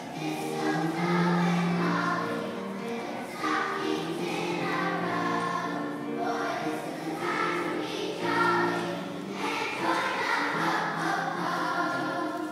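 A large children's choir singing together, holding notes that change every second or so.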